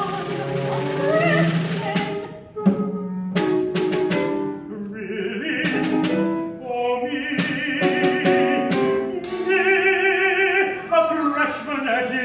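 Chamber opera: a small instrumental ensemble with sharp percussive strikes about two seconds in, then a male singer's line with wide vibrato over the ensemble.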